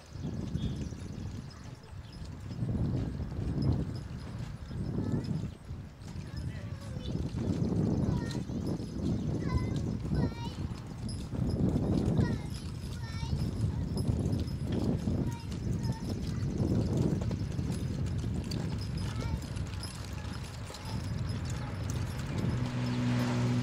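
Hoofbeats of a team of two Percheron draft horses walking on a gravel drive, with faint bird chirps about halfway through.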